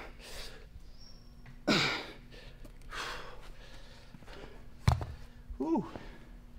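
A man breathing out hard and sighing while straining through a one-arm kettlebell press, with two strong exhales in the first half. Near the end comes a single sharp thud as the kettlebell is set down on the floor, followed by a short grunt that falls in pitch.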